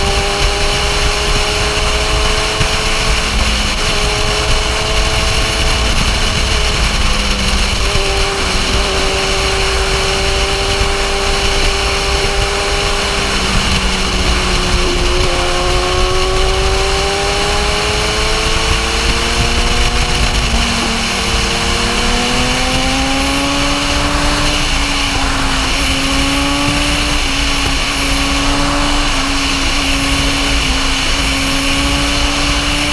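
BMW S1000RR inline-four engine heard from the rider's seat at road speed, its pitch holding steady, dipping, then climbing for about ten seconds past the middle as the bike speeds up. Heavy wind rush on the microphone runs underneath.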